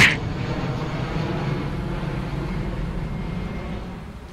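Jet airliner flying overhead, a steady low rumble that eases slightly toward the end. A brief sharp click at the very start.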